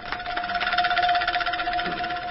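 A loud, steady buzzing tone with a rapid rattling pulse that sets in suddenly.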